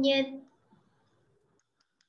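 A woman's voice holding a drawn-out hesitant word for about half a second, then room quiet with a couple of faint ticks.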